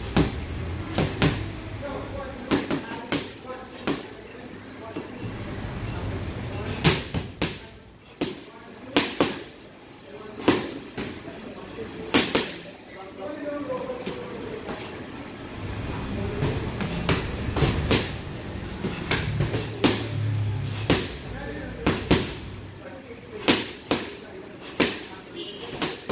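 Gloved punches smacking into handheld focus mitts during pad work: sharp slaps coming in quick combinations of two or three, with short gaps of a second or two between flurries.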